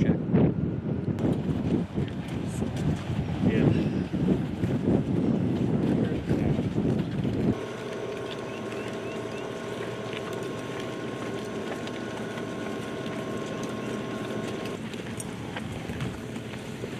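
Wind buffeting the microphone in loud, rough gusts. About halfway through, this gives way to a steady vehicle engine drone holding several constant tones.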